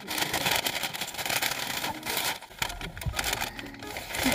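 Paper bag crinkling and rustling in quick, irregular crackles as hands handle it and try to open it.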